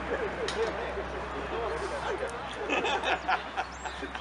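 Indistinct men's voices calling out across the pitch, louder for a moment near the end, over a steady low background hum.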